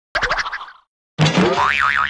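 Cartoon-style comedy sound effects: a short wobbling twang that dies away within about half a second, then after a moment of silence a louder boing whose pitch wobbles up and down like a bouncing spring.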